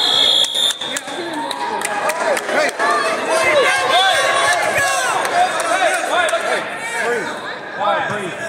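Wrestling score clock's buzzer sounding one steady high tone for about a second at the start, marking the period clock running out. Many voices shout over it and afterwards.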